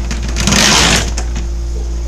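A brief scraping noise, about half a second long, starting about half a second in, over a steady low hum.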